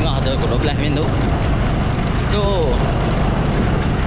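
Steady low rumble of wind buffeting the microphone and a small motorcycle engine running while riding along a road.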